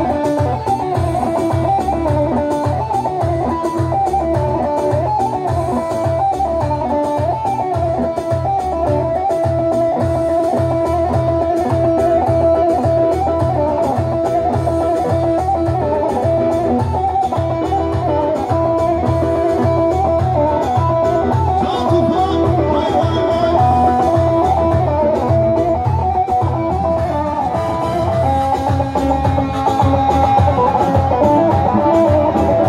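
Instrumental halay dance music: a bağlama (long-necked saz) plays a quick, winding melody over a steady low drum beat.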